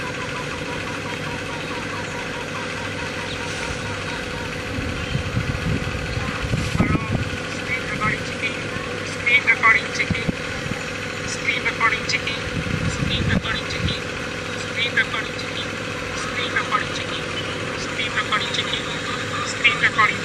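Steady background hum with low rumbles swelling twice, and faint distant voices.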